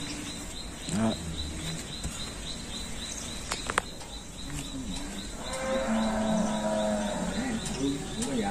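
Cattle mooing: one long, low moo starting about five seconds in and held for over two seconds, with a shorter low call about a second in.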